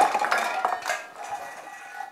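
Tin food cans clattering and rolling on a wooden floor after a stacked display has been knocked down. The clinks thin out and fade as the cans settle.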